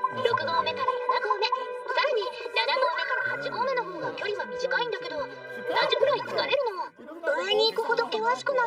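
Spoken dialogue in Japanese over background music with long held notes.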